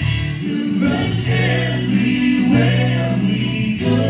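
Live worship song: male and female voices singing together over guitar accompaniment, sustained notes moving in steady steps.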